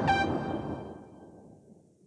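Final notes of a karaoke backing track dying away, fading out over about a second and a half.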